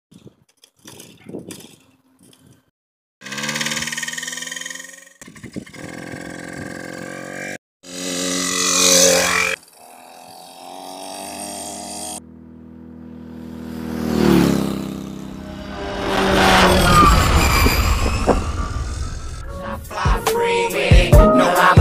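Small mini dirt bike engine revving in several short cut-up clips, its pitch rising and falling with the throttle. From about 12 seconds in, a longer sound with sweeping, rising and falling pitch builds in loudness.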